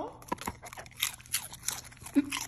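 A German shorthaired pointer crunching and chewing a crisp chip: a quick run of sharp, irregular crunches.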